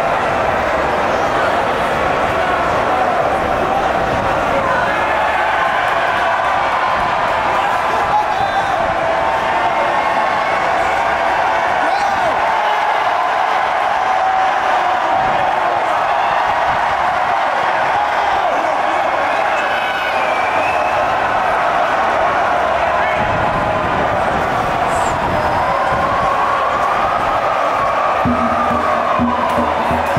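Large crowd cheering and shouting, many voices at once in a loud, unbroken din.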